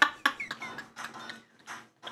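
Two people laughing hard, in short breathy pulses that fade out over the second half.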